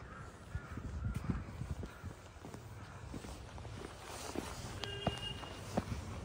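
Footsteps climbing stone steps, with crows cawing in the background.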